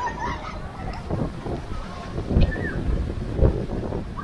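Gusty wind rumbling on the microphone, with stronger gusts about two and three seconds in.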